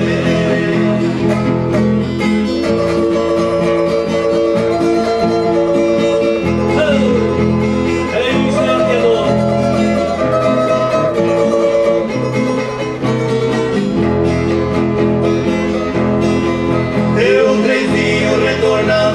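Brazilian música caipira duo's song played on acoustic guitars, a steady passage without words.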